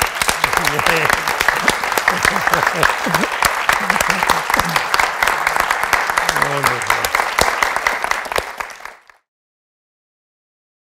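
A small audience applauding, dense steady clapping with some laughter and voices over it, fading out about nine seconds in.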